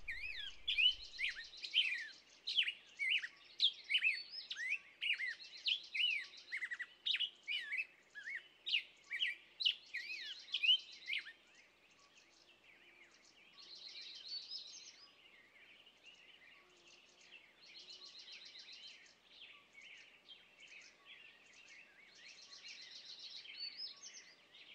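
Several songbirds singing at once: a rapid run of sharp falling chirps for about the first half, with a higher trilling phrase that repeats every four seconds or so throughout.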